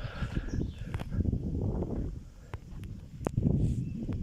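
Wind buffeting the microphone in uneven low gusts, with a few sharp clicks scattered through it.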